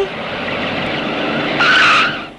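Car driving up and braking to a stop, with a tyre squeal near the end.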